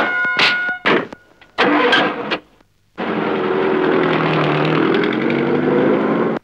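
A few sharp knocks, then a short silence, then a car engine starts about three seconds in and runs hard, revving as the car pulls away.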